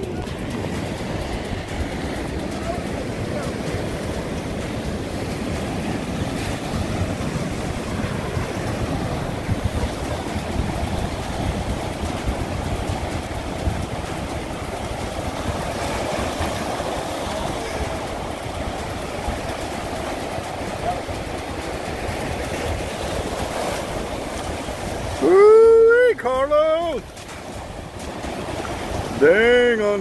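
Steady rushing of rough surf breaking against jetty rocks, with wind on the phone microphone. About 25 seconds in, a loud voice yells briefly.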